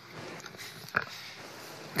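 Low room tone from the microphone, with one brief knock about a second in from the desk microphone being handled.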